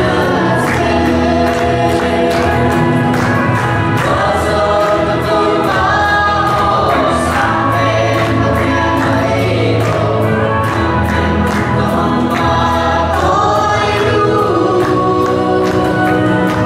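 A man and two children singing a Christian Christmas song together into microphones, over accompaniment with a steady beat.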